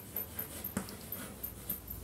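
Chalk writing on a blackboard: a handful of short scratchy strokes and taps as a word is written.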